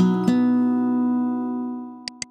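Short station ident music jingle on a plucked, guitar-like instrument: a final chord struck just after the start rings on and fades away near the end.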